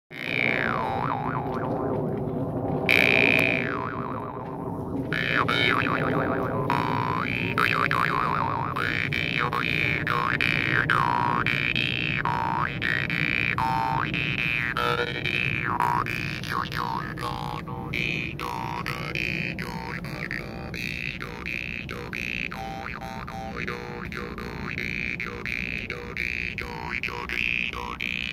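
Metal jaw harp (vargan) played: a steady twanging drone whose overtones are swept down and up by the mouth in a repeating melodic pattern, about once a second.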